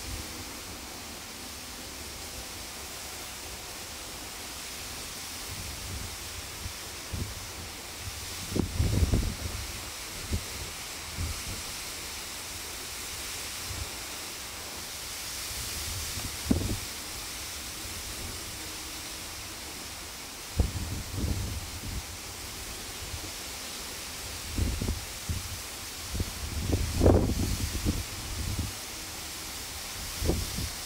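Steady outdoor hiss with irregular low buffets of wind on the microphone, the strongest about nine seconds in and two to three seconds before the end.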